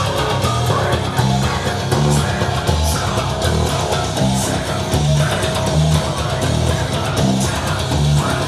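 Electric bass, a Mike Lull T-Bass, played fingerstyle in a fast, busy metal line, notes changing several times a second, each finger plucked hard through the string.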